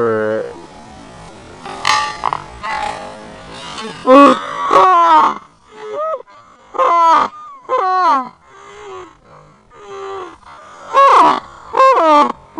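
A person laughing and groaning in a run of short, falling-pitch vocal sounds after a fall onto the playground's rubber surface. There is a brief noisy burst about two seconds in.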